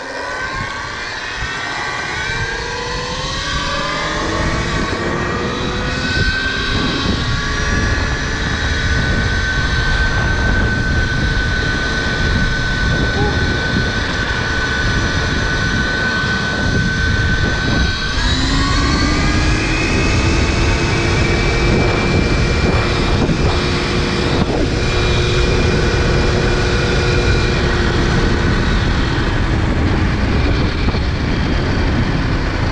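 Electric motor of a KTM Freeride E-XC enduro bike whining under way. The whine rises in pitch over the first several seconds and holds steady, then drops suddenly and climbs again about two-thirds of the way in. Wind and road noise rush underneath.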